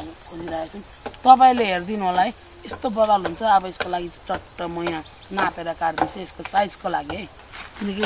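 A person talking in bursts over a steady, high-pitched drone of insects in the surrounding forest.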